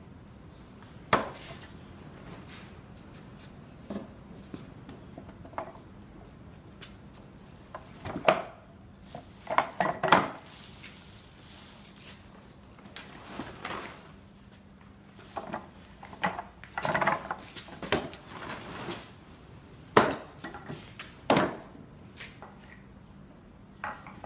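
Irregular wooden knocks and clattering, with some metallic clinks, as timber beams and metal pipe pins are handled and fitted on a wooden lever-driven block press. The loudest knocks come in clusters about a third of the way in, and twice near the end.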